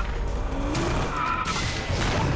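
A car pulling away with its tires squealing about a second in, over a steady low engine rumble.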